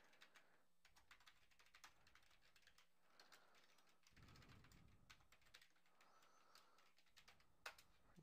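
Faint typing on a computer keyboard: a quick, uneven run of key clicks with short pauses, two sharper clicks near the end.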